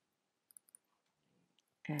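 Three quick, soft clicks of computer input about half a second in, followed by a few fainter ticks.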